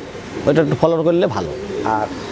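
Domestic fancy pigeons cooing in a loft, a low murmuring coo under a man's voice.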